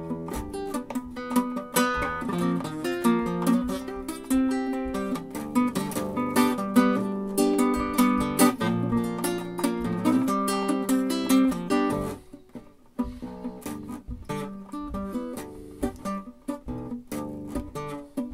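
A solo acoustic guitar plays an instrumental break without vocals, in a steady run of picked and strummed notes. About two-thirds of the way through it dips briefly almost to nothing, then carries on more softly.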